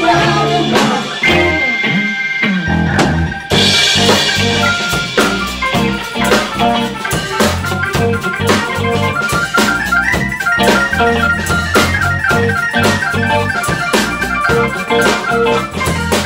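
Live band music led by an electronic organ over drum kit, guitar and bass. After a thinner passage the full band comes back in about three and a half seconds in with a cymbal crash, and from about ten seconds on the organ plays a fast run of repeated high notes.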